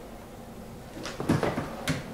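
A wooden chair knocking and shifting as someone gets up from it: a couple of sharp knocks starting about a second in.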